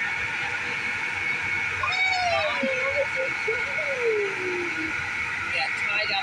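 School bus engine idling, a steady hum; about two seconds in, a small child's high voice gives two long, falling, drawn-out calls.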